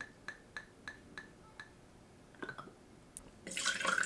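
Sweet vermouth dripping from the bottle into a steel jigger, a run of small ringing drips about three a second. Near the end the jigger is tipped into a stainless shaker tin with a short, louder splash.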